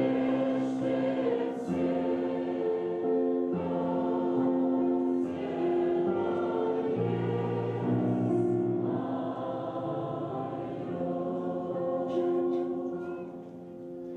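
A church choir singing a slow hymn in sustained chords, each chord held for a second or two. The singing fades out near the end.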